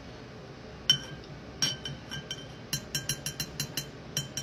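A metal fork clinking, with each tap ringing briefly. A few separate taps come first, then a quick run of about eight near the end.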